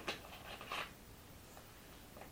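Handling noise from an object in the hands: a few short rustling clatters within the first second, then quiet room tone.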